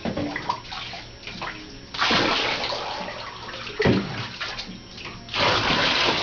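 Bath water sloshing and splashing as it is scooped by hand over chow chow puppies in a bathtub, with two louder gushes, about two seconds in and again near the end.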